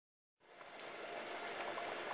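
Silence, then a faint, steady rush of running or bubbling water fades in about half a second in and slowly grows louder.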